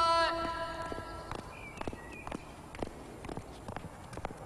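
Footsteps on a hard corridor floor at a steady walking pace, about two steps a second. At the start, the long held note of a man's shouted call dies away.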